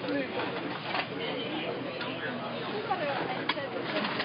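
Indistinct background chatter: several people talking at a distance, with a few short clicks or knocks.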